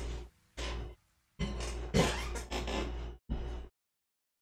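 Bursts of rustling and bumping from a person getting up out of a desk chair and moving off, about five separate bursts in the first three and a half seconds. The sound then cuts off to dead silence.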